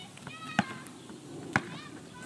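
A basketball bouncing on asphalt as it is dribbled: two sharp bounces about a second apart.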